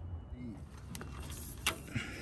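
Faint handling noises while working under a vehicle: two sharp clicks, about a second in and near the end, over a low rumble, as a plastic diff breather hose is fed along the chassis rail and the phone is moved.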